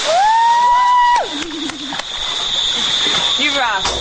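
A person screaming while jumping off a bridge: one long high scream, held for about a second before it breaks off. Shorter wavering cries follow over a steady hiss.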